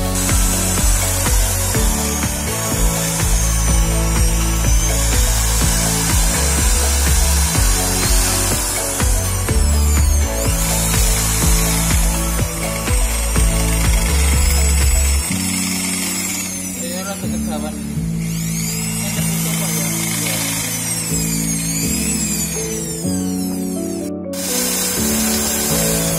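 Background music, with an electric hand drill (DCA) running under it as it bores into a metal bicycle frame tube. The drill's whine rises and falls in pitch.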